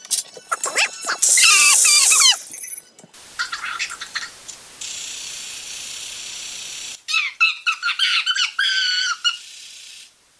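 Heavily sped-up episode soundtrack: squeaky, chipmunk-like voices and sound effects in quick succession, with a loud burst about a second in.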